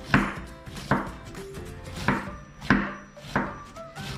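A chef's knife slicing cabbage on a wooden cutting board: about five separate knocks of the blade meeting the board, each less than a second apart.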